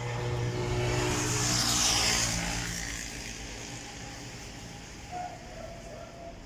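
A motor vehicle going by, its engine hum and noise swelling to a peak about two seconds in and then fading away.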